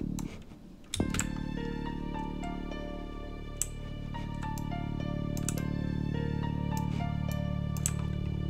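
A beat playing back: a long held sub-bass note from a Korg Triton 'Big Butt Bass' synth preset comes in about a second in, under a high descending piano pattern with strings. A few light clicks sound over it.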